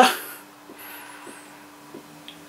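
Quiet room tone with a faint steady hum after speech trails off, and a faint high warbling sound briefly about a second in.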